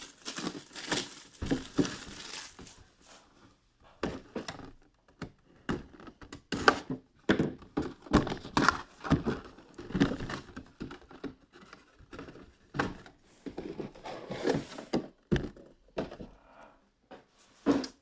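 Cardboard mini-helmet box and the clear plastic display case inside it being handled: irregular rustling, scraping and small knocks throughout.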